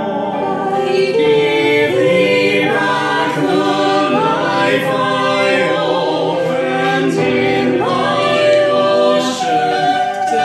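A small mixed group of men's and women's voices singing together in harmony from sheet music, holding and moving between sustained notes.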